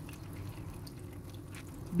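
Beaten eggs frying in hot oil in a pan: a faint, even sizzle with a few small scattered pops.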